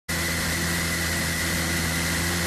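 LMP2 prototype race car's engine idling steadily while the car sits stationary, heard through the onboard camera in the cockpit, with a thin steady high whine over the low hum.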